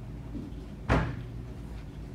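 A single sharp knock about a second in, over a steady low hum.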